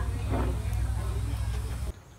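Steady low rumble of outdoor background noise with a faint voice about half a second in; it cuts off abruptly near the end.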